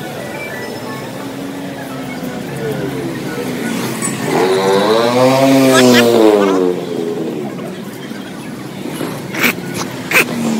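Busy street ambience of traffic and people. Around the middle, a louder pitched sound rises and then falls in pitch over about two seconds, and a couple of sharp knocks follow near the end.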